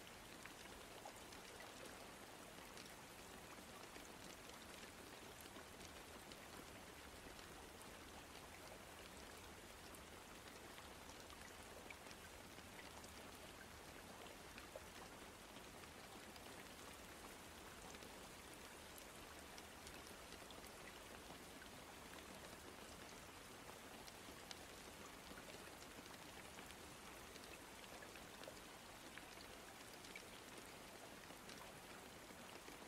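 Faint steady rain: an even hiss with scattered drop ticks.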